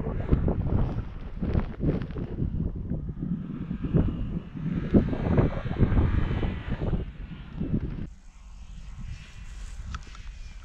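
Wind buffeting the microphone in irregular low thumps, which die away about eight seconds in, over the faint rise and fall of a distant rallycross car's engine revving as it slides through the snow.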